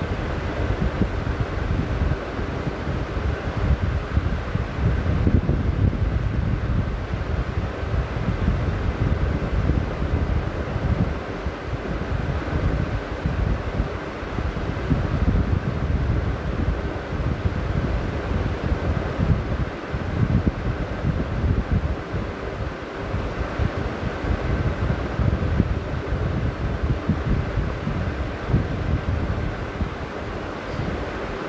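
Wind buffeting the camera's microphone: an uneven low rumble that rises and falls in gusts.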